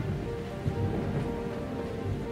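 Storm sound effect: steady heavy rain with a low rumble of thunder, under soft background music with held notes.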